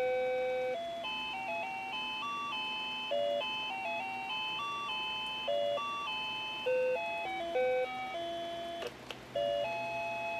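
Sony ICF-A15W clock radio's alarm in melody mode, playing a simple electronic beeping tune of stepped single notes. About nine seconds in the tune breaks off briefly with a click, then starts again.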